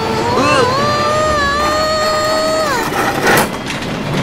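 A cartoon voice holding one long, slightly wavering note for about two and a half seconds, then a short rushing burst of noise a little after three seconds in.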